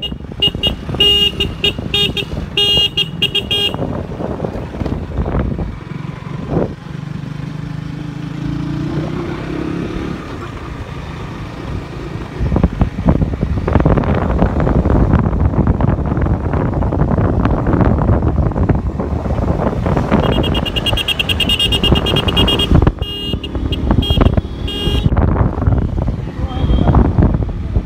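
A KTM RC sport motorcycle being ridden, its engine running under wind noise on the microphone that grows much louder about 12 seconds in as the bike picks up speed. A vehicle horn beeps rapidly and repeatedly in the first few seconds and again about 20 seconds in.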